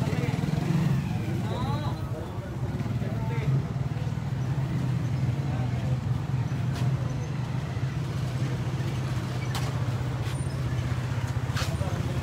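A motor vehicle engine idling steadily close by, with a few sharp clicks in the second half.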